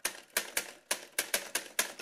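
Typewriter keystroke sound effect: about nine sharp key strikes at an uneven pace, typing out a title word letter by letter.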